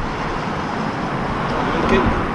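Steady road traffic noise from a busy street, swelling slightly near the end.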